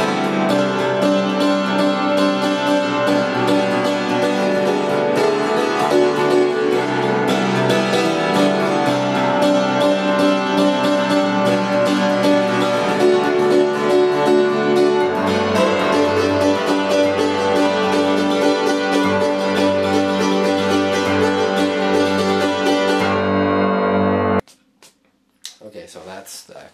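Upright tack piano, thumbtacks pressed into its hammer heads, played with both hands in a full chordal passage, each note carrying the tacks' metallic, jangly edge. A lower bass line comes in about halfway, and the playing stops abruptly a couple of seconds before the end.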